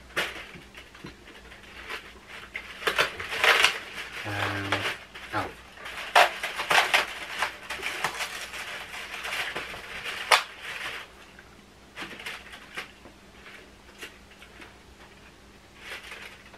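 Cardboard Cadbury Dairy Milk advent calendars being handled at speed: doors pushed open and chocolates picked out of the plastic trays, with irregular rustling, crinkling and sharp clicks. A short low voice sound comes about four and a half seconds in.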